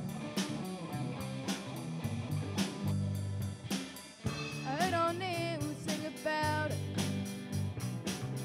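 Live rock band playing: electric guitars over a steady beat on a Sonor drum kit. About halfway through a melody line with sliding, bending notes comes in over the accompaniment.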